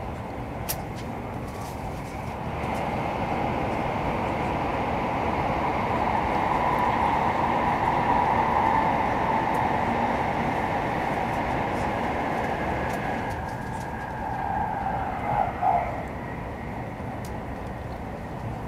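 Steady running noise inside a Taiwan High Speed Rail 700T car travelling at speed. It grows louder a couple of seconds in and stays up for about ten seconds while the train runs through a tunnel, then eases back. A few brief knocks come near the end.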